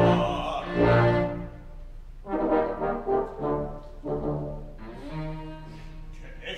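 Opera orchestra playing a short instrumental passage in about four separate phrases, with brass prominent.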